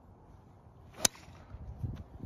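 Golf driver striking a teed ball: one sharp crack of the clubface on the ball about a second in.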